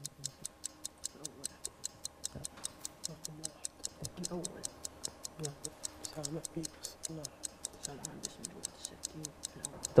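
Quiz-show countdown timer sound effect: a clock ticking fast and evenly while the answer time runs down.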